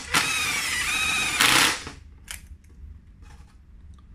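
Makita 18-volt cordless driver running a bolt into an aluminium wheel hub: a steady high motor whine for about a second and a half that ends in a louder, harsher burst as the bolt tightens, then stops about two seconds in. A few faint clicks of handling follow.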